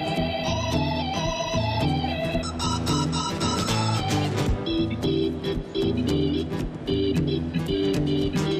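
Electronic stage keyboard taking an organ-toned solo in a live rock band, held chords and runs over steady drums and bass.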